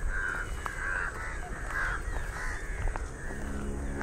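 Crows cawing over and over, about half a dozen calls in a row, over a low outdoor rumble.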